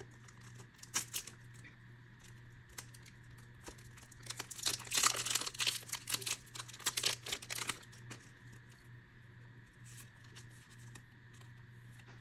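Foil wrapper of a Pokémon VSTAR Universe booster pack being torn open and crinkled by hand: scattered crackles, with a louder, denser stretch of tearing and crinkling in the middle. A faint steady hum lies underneath.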